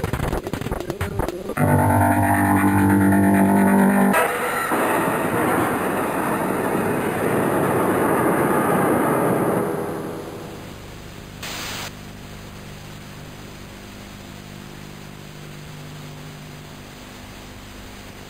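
Edited electronic sound effects: about a second and a half of glitchy stuttering, then a loud droning chord, then a dense harsh noise that fades out about ten seconds in. A quieter low steady hum follows, with a brief hiss near twelve seconds.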